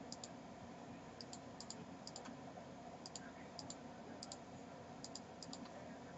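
Faint computer mouse button clicks, mostly in quick pairs, recurring irregularly every second or so over a steady low hum.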